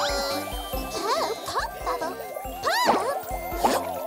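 Playful children's cartoon background music with tinkling chimes over a steady bass line, with a few sliding-pitch sound effects, the strongest arching up and down about three seconds in.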